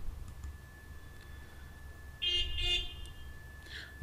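Two short pitched toots in quick succession a little past halfway, over a faint steady high whine.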